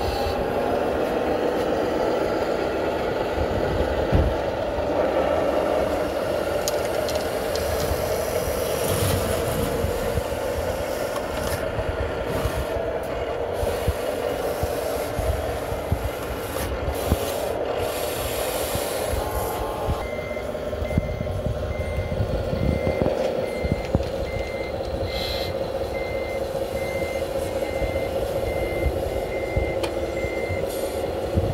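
Steady hum of the radio-controlled construction models' motors and hydraulics, with bursts of gravel scraping and rattling. From about two-thirds of the way through, an evenly spaced reversing beep sounds a little over once a second from the scale hooklift truck's sound module.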